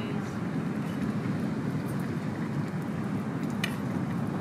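Portable camping gas burner running under a simmering pot: a steady low rushing rumble, with one short click about three and a half seconds in.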